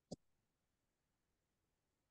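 Near silence with a single short click just after the start.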